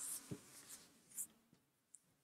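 Near silence in a small room, broken by a few faint, short scratches and clicks, one about a third of a second in and one about a second in.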